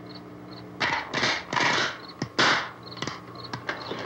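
Handling and working noises: about four short rasping bursts, like wood being scraped or cloth torn, and a few sharp knocks, over a low steady hum on the old film soundtrack.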